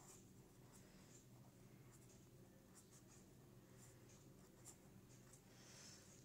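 Faint scratching of a pen tip on ruled notebook paper as a word is written in cursive, in short, irregular strokes.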